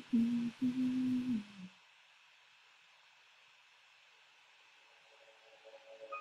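A woman humming two short held notes, the second one dipping in pitch at its end. Near silence follows for the rest of the time.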